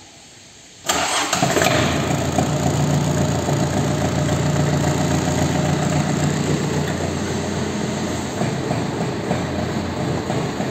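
Mitsubishi MT-21D mini tractor's four-cylinder diesel engine starting about a second in and settling straight into a steady idle.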